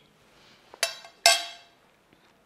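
Metal fork and knife clinking against a plate twice, a little under and a little over a second in, each strike ringing briefly.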